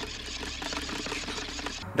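Hand-crank dynamo flashlight being wound fast: a rapid ratcheting gear whir that stops just before the end.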